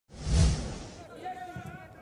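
A broadcast intro whoosh with a deep thud, loudest in the first half-second and fading by about a second in. After it come faint distant voices from the pitch.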